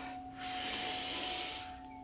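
A woman's deep breath in: one airy inhale of about a second. Faint background music with steady held notes plays underneath.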